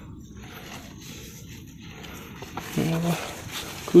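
Low background hush for nearly three seconds, then one short, level-pitched vocal sound from a man, a drawn-out 'aah' or hum at the pitch of his speaking voice.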